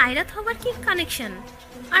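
A woman speaking Bengali dialogue.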